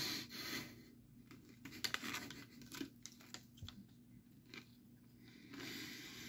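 Faint scattered crackles, scratches and rustles of hands handling a Nerds Rope candy and its wrapper, with a short cluster of crackles about two seconds in. A soft breathy sound comes at the start.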